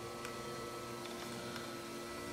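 Faint steady electrical hum with a few steady tones held throughout, and a light click a quarter second in.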